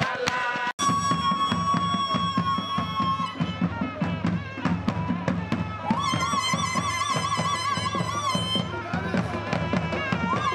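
An algaita, the West African double-reed shawm, holds a long reedy note and then plays a wavering, trilled phrase from about six seconds in, over a steady beat of slung double-headed drums. It starts with under a second of calabash beating and voice, which breaks off abruptly.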